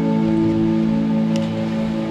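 A live band's sustained chord rings steadily and slowly fades, as at the close of a song.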